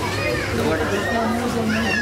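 Several people talking at once, with a steady low hum underneath.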